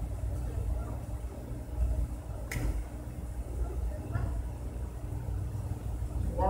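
Low steady rumble of room noise in a large hall, with faint voices in the background and one sharp click about two and a half seconds in.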